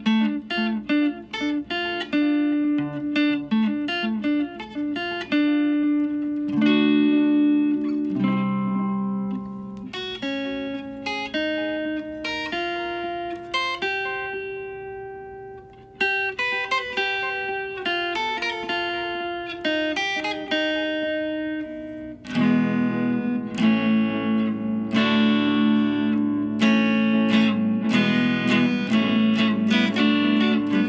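Electric guitar played through a Boss Katana Mini practice amp: a continuous run of picked single-note lines, easing off around the middle, then turning louder and fuller with chords from about two-thirds of the way in.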